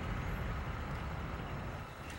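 Steady low rumble of an idling vehicle engine, with no distinct events.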